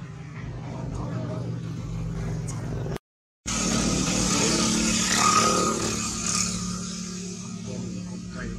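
A motor vehicle engine running steadily, with a louder noisy swell as it passes close by, peaking about five seconds in and then fading, mixed with voices. The sound cuts out completely for a moment about three seconds in.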